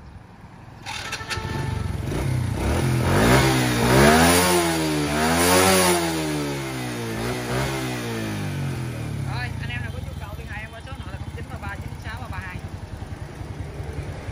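Honda Wave 100's small single-cylinder four-stroke engine, fitted with an aftermarket Takegawa CDI and ignition coil, running at idle. In the middle it is revved up and down a few times, rising and falling in pitch, then settles back to a steady idle.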